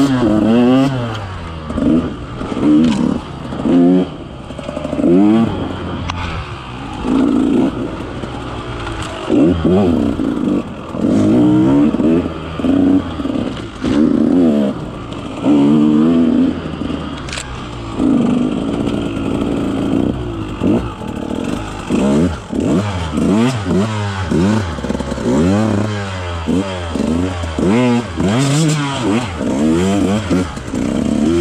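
KTM 150 XC-W two-stroke single-cylinder enduro engine under changing throttle, its pitch rising and falling again every second or two in repeated bursts of revs.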